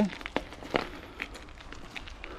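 Bicycle rolling along a dirt forest path: a low steady rumble with a few scattered light clicks.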